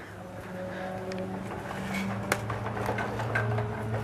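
A steady low mechanical hum that grows a little louder about halfway through, with a few light clicks over it.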